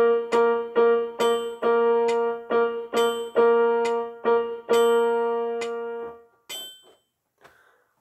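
A single note, concert B-flat, struck over and over on a keyboard instrument, playing the written rhythm: quick even eighth notes, then the eighth–quarter–eighth pattern twice, ending on a long half note that fades out about three-quarters of the way through.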